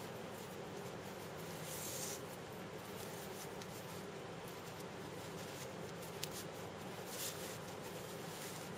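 Faint rustling and rubbing of a climbing rope as it is threaded back through a figure-eight knot and the harness tie-in loops, with one small click a little after six seconds, over a steady low room hum.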